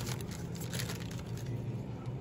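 Foil wrapper of a trading-card pack crinkling as it is handled and the cards are pulled out, with faint rustles mostly in the first second, over a steady low hum.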